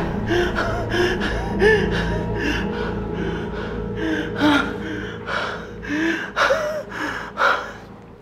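A man gasping and panting hard for breath after running, with loud voiced breaths about two to three a second that slow down and grow quieter near the end.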